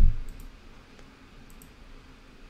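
A few faint computer clicks: one about a third of a second in and a quick pair about a second and a half in, with a soft low thump at the very start.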